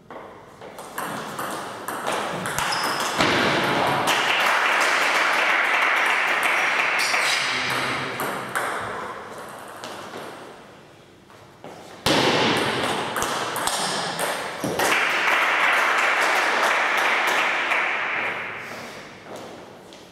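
Table tennis rallies: the celluloid ball clicking rapidly back and forth off rubber paddles and the table, in two long exchanges, the first starting about a second in and the second about twelve seconds in, each dying away as the point ends.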